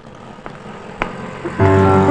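Faint city street traffic ambience with auto-rickshaws and motorbikes, a single sharp click about a second in, and a steady low tone starting near the end.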